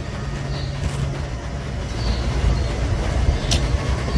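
Outdoor street background noise: a steady low rumble with a few faint high chirps and a short click near the end.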